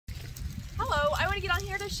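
A woman speaking, starting just under a second in, over a steady low rumble.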